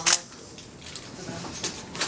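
A single short DSLR camera shutter click right at the start, then a quiet small room with faint handling noise and one more soft click about a second and a half in.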